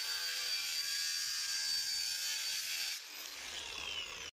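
Milwaukee cordless angle grinder cutting a white finishing cover to length, its disc running with a steady high whine over a gritty hiss. About three seconds in the cut ends and the whine falls as the disc spins down.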